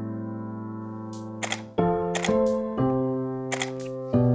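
Soft electric-piano music with held chords that change every second or so. Several camera shutter clicks from a Canon DSLR sound over it, some in quick pairs.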